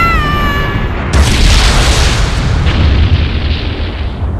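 Cartoon explosion sound effect for an energy attack blast: a sudden loud blast about a second in, with a deep rumble that swells again and then dies away.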